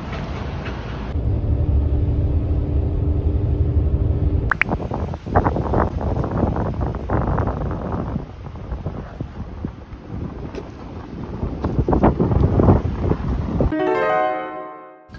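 Road traffic passing and gusty wind buffeting the microphone, with a low steady engine hum for a few seconds near the start.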